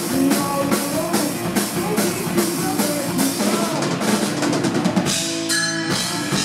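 Live hard rock band playing: electric guitar, bass guitar and a drum kit. A quick run of drum hits comes about four and a half seconds in, then the band holds a chord near the end.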